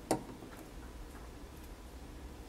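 A single sharp click just after the start, then a few faint light ticks: small handling sounds of hands working clay and tools at the workbench.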